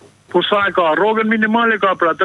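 A caller speaking over a telephone line, the voice thin and cut off in the treble; it starts after a short pause and runs on without a break.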